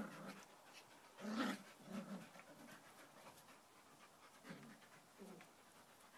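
Two dogs play-fighting, panting, with several short breathy bursts from them; the loudest comes about a second and a half in.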